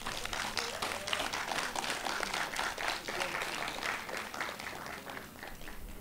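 Audience applauding after a speech, a dense patter of many hands clapping that eases off slightly near the end.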